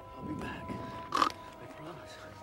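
A man's grunts and groans of strain and pain, rough and low, with a short sharp outburst just past the middle, over music that holds steady tones.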